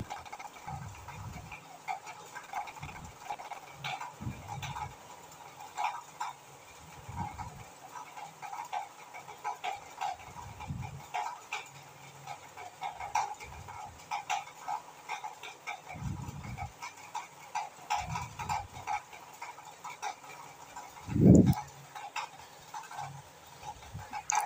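Marinated chicken pieces being laid one by one into hot oil in a flat iron frying pan, the oil crackling and spitting in short irregular spurts. Dull low thumps come every second or two as pieces are set down and moved, the loudest about 21 seconds in.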